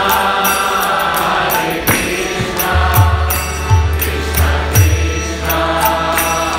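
Kirtan: voices chanting a mantra to harmonium accompaniment. A hand drum gives low beats and small hand cymbals strike at a steady rhythm.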